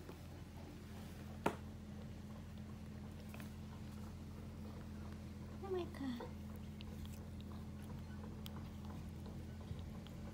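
A cat purring steadily and low while it licks and grooms a kitten, with soft wet licking sounds. There is one sharp click about one and a half seconds in, and a short, soft, falling voice sound just before six seconds.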